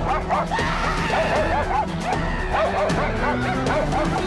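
A dog barking and yipping rapidly, again and again, over background music.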